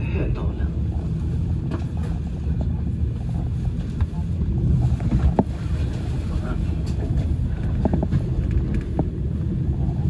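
Metro train running at speed, heard from inside the car: a steady low rumble of wheels on rails with occasional sharp clicks from the track.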